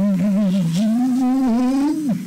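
A man's voice in one long, drawn-out wail, wavering and slowly rising in pitch.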